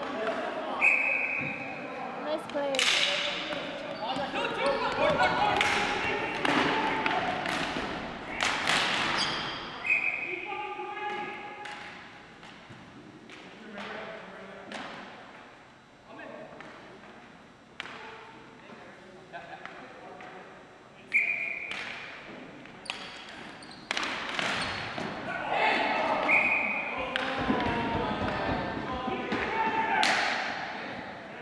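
Ball hockey play in an echoing gym: sharp clacks and thumps of sticks and the ball on the hardwood floor and walls, with players' voices in the background. A few brief high tones sound at four points, about a second in, near ten seconds, near twenty-one seconds and near the end.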